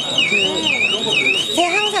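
Electronic alarm sounding steadily: a high tone sweeping down and back up about twice a second, with voices over it.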